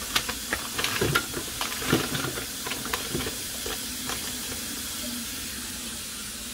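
Hot water running from a kitchen tap in a steady hiss, left on to warm an ice cream scoop. Sharp clicks and knocks of containers being handled come over it in the first half.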